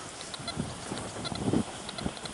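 Faint honking calls of geese, a few short calls.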